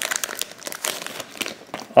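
Thin clear plastic bag crinkling and crackling in quick, irregular bursts as a magnetic card holder is slid out of it.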